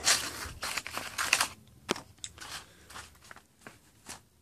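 Rustling and crinkling of the machete's cardboard box and paper packaging as they are handled for about the first second and a half, then a few light clicks and taps.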